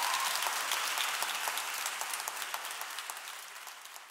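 Audience applauding, a dense patter of many hands clapping that gradually fades away.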